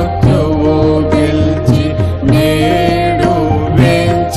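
A Telugu Christian song of Jesus's victory over death, sung by a voice with wavering held notes over instrumental accompaniment with a steady bass.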